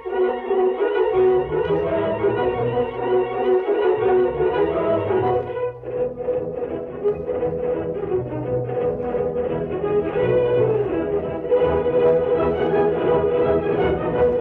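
Orchestral music with strings and brass. After a short break about six seconds in, it moves into a brisk, evenly pulsed passage, then swells fuller near the end.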